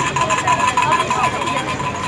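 Voices talking over the noise of road traffic, with a thin, steady high-pitched tone running underneath.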